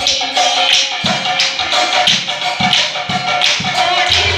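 Nagara Naam devotional music: drum strokes and cymbals keeping a steady beat, about two strokes a second, with a held sung or played note over it.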